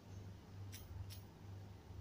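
Two faint taps on a smartphone's on-screen number keypad as digits are typed, a third of a second apart, over a low steady hum.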